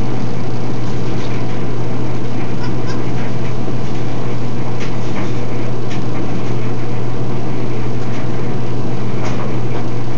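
A steady, loud low hum like a running fan or motor, unchanged throughout, with a few faint clicks.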